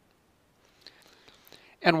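Near silence, then a faint breath drawn in from about a second in, just before a man starts speaking at the very end.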